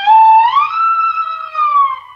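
Electric steel guitar holding a single sustained note that slides up in pitch a little after the start, holds, and glides back down near the end.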